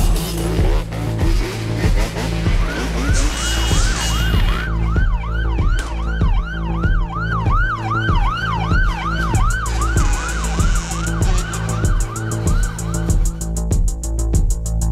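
A police siren in its fast yelp pattern, rising and falling about three times a second, comes in a couple of seconds in and runs until near the end. It plays over music with a steady heavy beat.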